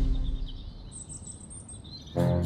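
The tail of the theme music dies away in the first half second, leaving faint birdsong: short high chirps and a thin warbling trill.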